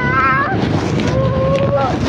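Wind buffeting a handheld phone microphone while walking, a loud steady rumble, with a high-pitched voice at the start and again near the end.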